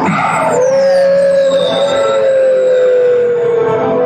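Dramatic orchestral film score under one long, eerie held tone that starts about half a second in and sinks slowly in pitch, with a fainter high tone gliding down above it.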